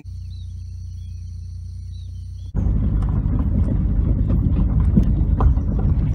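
Car-cabin road noise of a lowered sedan driving over a rough, stony gravel road: a loud low rumble from tyres and suspension with scattered knocks from stones, starting suddenly about two and a half seconds in. Before it, a quieter steady low hum with high, thin insect-like tones.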